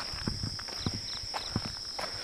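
Crickets chirring steadily and high at night, with a few soft, irregular knocks of footsteps on the ground.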